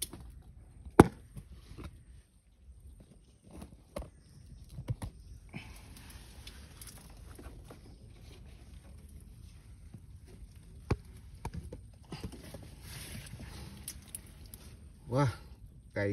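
Crab hook rod knocking and clicking against mangrove roots, a handful of sharp knocks, the loudest about a second in, with soft rustling of movement through the roots in between.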